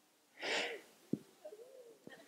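A pause in the speech, holding one short, faint breathy sound about half a second in, a quick gasp-like intake of breath, followed by a single small click a little after one second.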